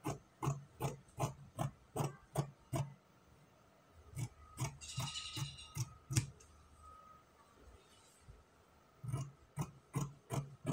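Dressmaking scissors snipping through folded layers of lining fabric, in a steady run of about two or three cuts a second. The cutting stops for a couple of seconds and starts again near the end.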